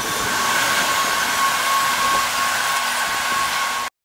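Subway train in an underground station: a steady rushing noise with a thin high whine running through it, cutting off suddenly near the end.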